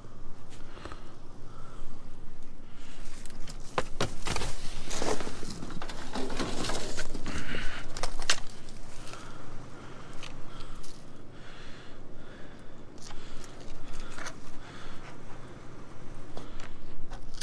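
Rummaging through debris in a steel dumpster: scattered knocks, scrapes and plastic rustling as skis and boards are shifted, busiest a few seconds in.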